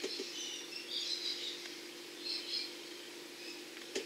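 Birds chirping faintly in the background, in short scattered calls, over a steady low hum.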